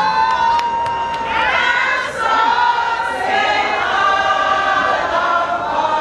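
A group of women singing and cheering together, many voices overlapping. A long held high tone in the first second and a half drops away.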